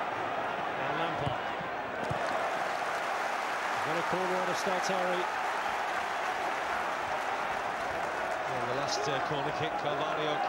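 Football stadium crowd noise, a steady wash of many voices, with a few held shouts rising above it about four seconds in and again near the end.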